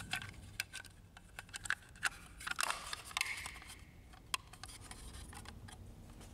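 Plastic cover of a laser printer's scanner unit being fitted and clipped on by hand: a run of small plastic clicks with a brief scrape of plastic on plastic in the middle, dying away after about four seconds.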